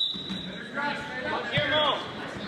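Indistinct shouting from spectators at a wrestling match, one short call about a second in and another near the end, over a steady hall din. A referee's whistle blast ends just as it begins, its tone lingering briefly.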